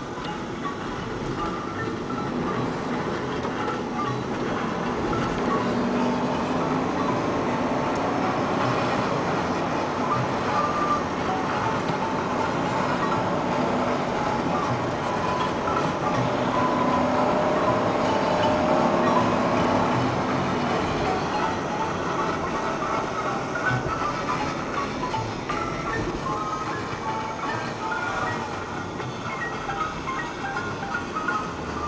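Steady road and engine noise heard inside a moving car, with music playing over it.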